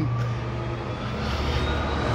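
Motor vehicle traffic passing on a city street: an engine running with a steady low hum and a faint whine above it.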